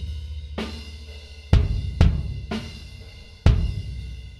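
The original kick drum track, close-miked with a Neumann U87, played back: several kick hits, each leaving a long low ring, with heavy bleed of snare and cymbals from the rest of the kit and little definition, the sign of a poor mic choice for the kick.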